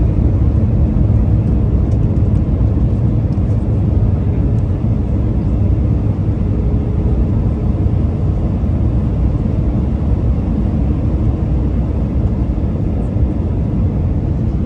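Steady low rumble of an airliner's engines and rushing air, heard inside the passenger cabin.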